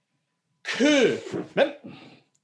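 A man's loud, harsh shouted call beginning a little after half a second in, its pitch falling, followed by a short second syllable: a kendo instructor's practice count shouted with a sayu-men strike of the shinai.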